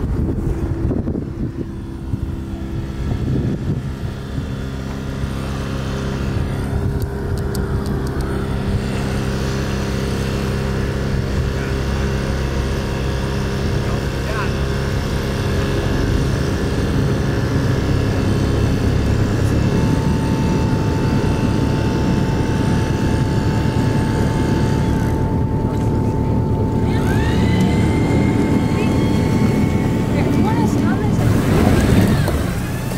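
Yamaha outboard motor on a schooner's yawl boat running steadily, its sound slowly growing louder. A higher steady whine joins about two-thirds of the way in.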